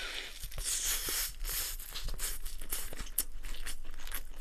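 A person biting into and chewing a thick, stacked toast sandwich, making a run of short crunching and tearing sounds.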